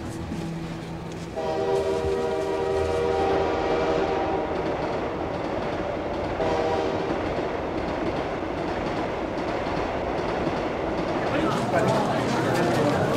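Passenger train running with a steady rumble. Its horn sounds one long blast about a second in and a short blast about six seconds in.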